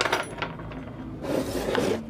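The metal chassis of a car stereo scraping across a wooden workbench as it is turned around. There is a sharp scrape at the start and a second, longer scrape near the end.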